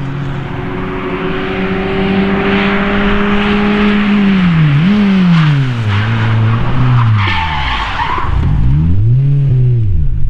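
Old Škoda saloon sliding sideways: its engine is held at steady high revs, then drops and is blipped up and down, while the tyres hiss and squeal across the tarmac. The squeal is loudest about seven seconds in, and the engine is blipped twice more near the end as the car runs off onto the grass.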